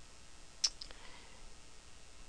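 A computer mouse button clicking: one sharp click, then two fainter clicks just after, over faint room hiss.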